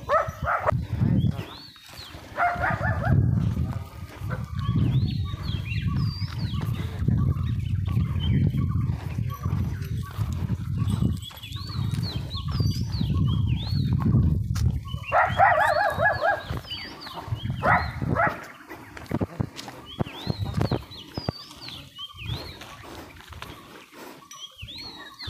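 Goats bleating, drawn-out wavering calls of about a second each, a few seconds in and again around two-thirds of the way through. Through the middle a low rumble runs for about ten seconds, and high short chirps repeat throughout.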